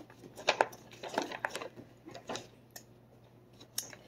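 Soft, scattered clicks and rustles of the Paqui One Chip Challenge box being handled, a few short taps at a time.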